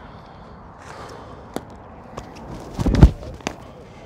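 A baseball pitch thrown off a dirt bullpen mound, heard on the pitcher's body-worn microphone: a few sharp clicks, then a loud low thud with rustling about three seconds in as he strides and throws.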